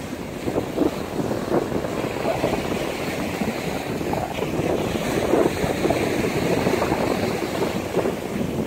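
Surf washing on the beach with wind buffeting the microphone, a steady unbroken noise.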